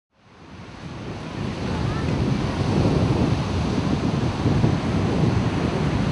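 Ocean surf breaking on a beach, a steady rolling wash with wind buffeting the microphone, fading in from silence over the first second or so.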